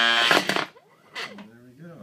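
Triple-stack NEMA 17 stepper motors driving a leadscrew actuator. At first there is a loud whine held at one pitch. From about 0.7 s the whines rise and fall in pitch as the carriage speeds up and slows down between moves, run on acceleration curves that have not yet been tuned.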